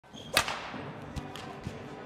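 Badminton racket hitting a shuttlecock once, a sharp crack with a quick swish into it about a third of a second in, echoing in a sports hall. A few fainter taps follow.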